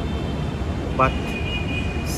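Steady low rumble of city background noise on an open rooftop, with a faint high steady whine over most of it.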